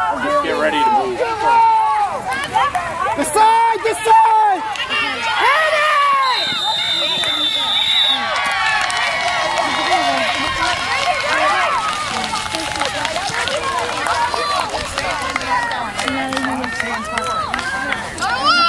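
Spectators on the sideline of a youth football game shouting and cheering over one another through a play. About six seconds in, a high, steady referee's whistle blast lasts about two seconds, the sign that the play is over.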